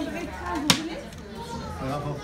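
Background chatter of adults and children. About two-thirds of a second in comes one sharp click, the loudest sound, from wooden toy train pieces being handled.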